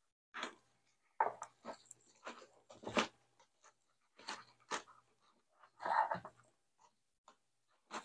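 Nylon webbing strap rustling and scraping against a metal ALICE pack frame in short, irregular bursts as it is threaded through and pulled tight.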